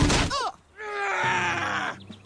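A sharp hit, then cartoon voices crying out: a short yelp, and after a brief gap a long groan that slowly falls in pitch.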